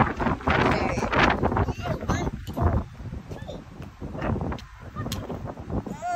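Young children making wordless vocal sounds, short calls and squeals, with a steady low rumble of outdoor noise on the microphone.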